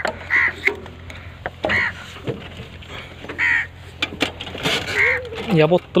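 A bird calling four times, short calls about a second and a half apart, over a low steady hum, with a few sharp clicks.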